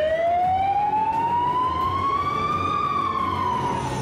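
Emergency vehicle siren in one slow wail: the pitch rises steadily for about three seconds, then starts to fall near the end.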